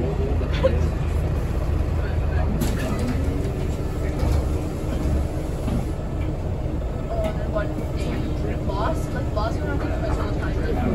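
Inside a Scania L94UB bus under way: the rear-mounted Scania DC9 nine-litre five-cylinder diesel and its ZF Ecomat automatic drivetrain give a constant low rumble. A whine rises in pitch about three seconds in and then holds steady.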